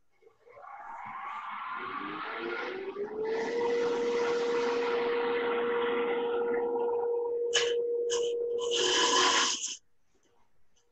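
Wood lathe motor spinning up, its whine rising in pitch over about three seconds and then holding steady, with a steady hiss and short bursts of a turning tool cutting the spinning wood blank near the end. The sound cuts off suddenly just before the end.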